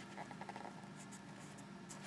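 Faint rustling and scraping of paper as hands hold and shift the pages of a thick hardback book, with a few soft scratchy strokes about a second in, over a faint steady hum.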